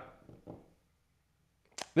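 A man's voice trailing off, then about a second of near silence before he starts speaking again near the end.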